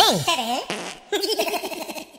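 Short cartoon-style sound-effect stinger: a pitch that swoops down and wobbles, then a buzzy, warbling sound with a fast regular wobble, like a silly voice or kazoo.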